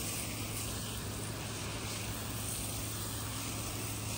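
Garden hose spray nozzle running, a steady hiss of water spray falling on the soil.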